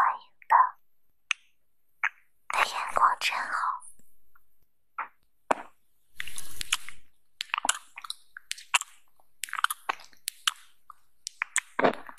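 Close-miked small clicks, taps and a short scrape from handling a nail polish bottle: the cap turning and the brush wiped against the bottle's neck. The sounds are scattered and sharp, most of them in the second half.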